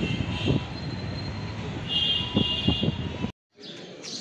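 Street traffic with vehicle engines running, several short knocks and a brief high tone about two seconds in; the sound cuts off suddenly just after three seconds.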